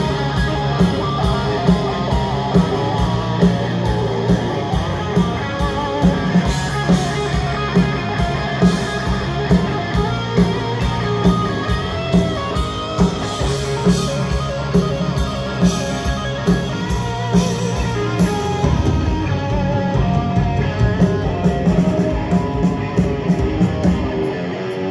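Hard rock band playing live: electric guitars over bass guitar and drums, with a steady drumbeat.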